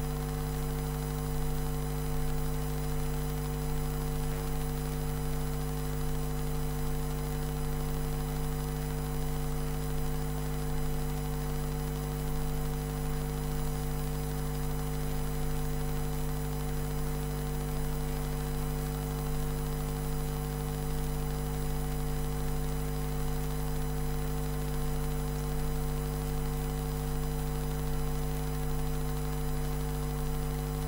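Steady electrical mains hum, a constant low buzz with a few higher tones above it and a faint hiss, unchanging throughout.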